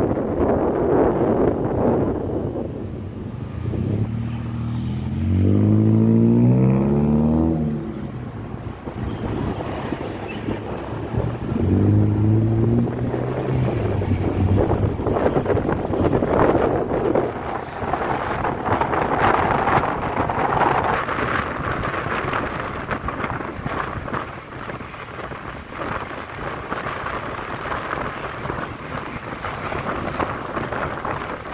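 Motorbike riding through town traffic: the small engine revs up and its pitch rises twice as the bike accelerates, about four seconds in and again about twelve seconds in, over a steady rush of wind and road noise on the microphone.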